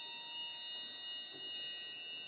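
Soft, high metallic percussion ringing in a concert band: light strikes about once a second, each note ringing on and overlapping the ones before.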